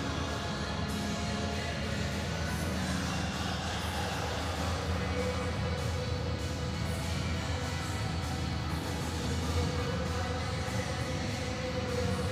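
Music playing, with long held notes over a strong, steady bass.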